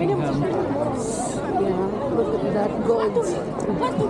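Chatter of several people talking at once in a crowd, voices overlapping without a break.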